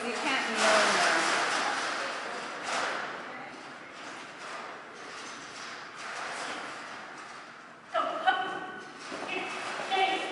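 Indistinct voices and noise echoing in a large hall, then a short spoken call about eight seconds in and another near the end.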